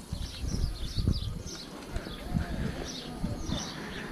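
Small birds chirping, many short calls in quick succession, over a low outdoor rumble.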